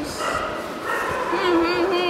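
A dog whining in high, wavering whimpers as it is petted, with a person's voice alongside.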